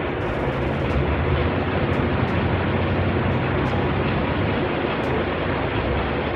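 Electric fan running steadily, a constant noise with a low hum underneath, and a few faint ticks along the way.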